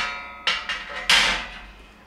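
Sheet-metal back panel of a gas range clanking as it is handled and set down. A knock at the start rings with a metallic tone, a few light clicks follow, and a louder clank about a second in rings away.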